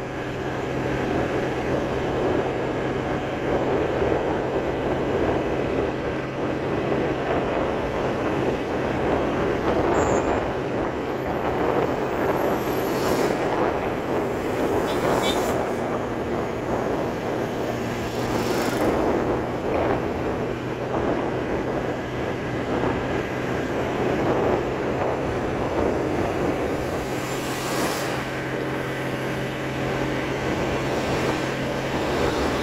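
Road and engine noise heard from inside a moving vehicle: a steady low drone under a rushing haze, with a few brief louder swells as other traffic passes close by.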